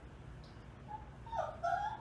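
A dog whining: several short, high whines that rise in pitch, starting about a second in.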